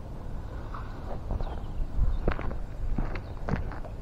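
Footsteps crunching on gravel with scattered light knocks and scrapes, at an irregular pace.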